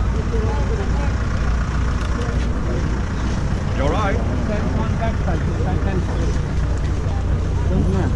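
Outdoor street-market ambience: a steady low rumble under scattered background voices of people talking, with one voice clearer about four seconds in.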